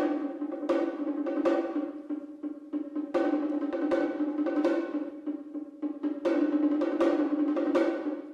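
Chamber ensemble playing an instrumental passage: a held chord in the strings and winds, punctuated by about a dozen sharp, unevenly spaced struck accents from the percussion and piano.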